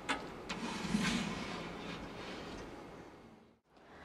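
Empty glass aquarium being turned on a wooden stand: a few knocks and a scrape of its plastic rim on the wood, then the sound fades away to silence near the end.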